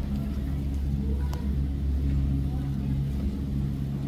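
Gondola lift station machinery running, a steady low drone and hum, as a cabin moves slowly through the station. A single sharp click about a second in.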